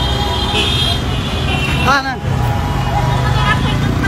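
Busy street traffic: a continuous low rumble of vehicles, with a steady high-pitched horn-like tone for about the first second and a half and a brief shout about two seconds in.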